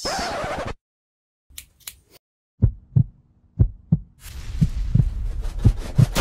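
Heartbeat sound effect: pairs of low thumps about once a second, with a low rumble building beneath them from about four seconds in. It opens with a short burst of noise, then a moment of silence.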